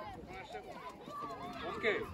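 Several voices of adults and children talking and calling in the background, overlapping into a murmur, with one brief louder call near the end.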